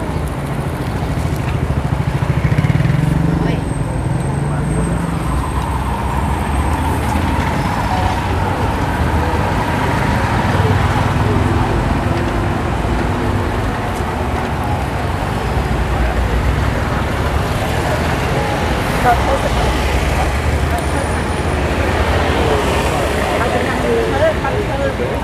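Steady city street traffic noise, with vehicle engines running, and people's voices mixed into the background.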